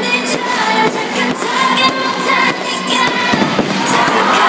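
Fireworks going off, with many sharp pops and bangs in quick succession, over music with singing.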